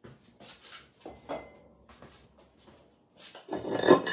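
Glazed ceramic mugs being picked up off kiln stilts and the kiln shelf: light scrapes and knocks, then a loud clatter of ceramic clinking near the end.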